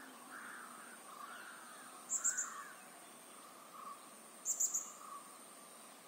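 Wild birds calling: a run of repeated rising-and-falling mid-pitched calls, and two short loud bursts of rapid high chirps, one about two seconds in and one near five seconds.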